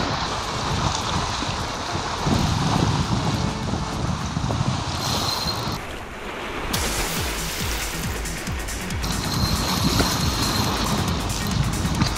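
Surf breaking and washing over shoreline rocks, with wind rumbling on the microphone. The sound shifts abruptly about halfway through.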